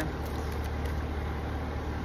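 Steady low rumble of background traffic noise, with no sudden sounds standing out.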